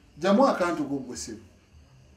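Speech: a man says a short phrase, followed by a faint low hum.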